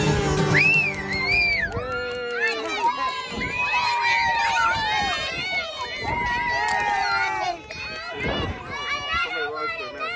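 A song played on acoustic guitar and kazoos stops at the start, then the performers laugh and talk in lively voices.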